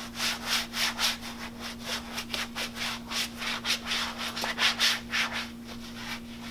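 Thick rubber utility gloves being wiped with a paper towel, gloved hands rubbing together in quick strokes, about three to four a second. A steady low hum runs underneath.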